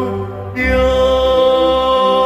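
A man singing karaoke, holding long sustained notes over backing music. About half a second in, the accompaniment's bass and upper parts come in fuller.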